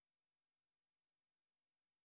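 Near silence at the end of a music track: the song has faded out and only a faint, even hiss of the recording's floor remains.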